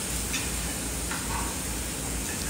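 Steady background hiss with a low hum underneath: room tone and microphone noise of a phone recording, with no distinct event.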